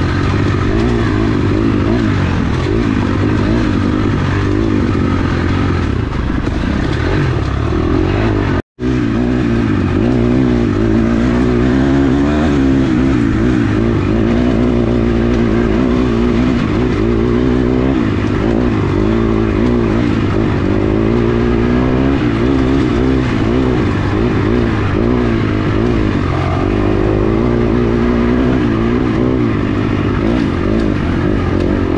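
Dirt bike engine revving up and down continuously as it is ridden along tight trail, its pitch rising and falling with the throttle. The sound cuts out for an instant about nine seconds in.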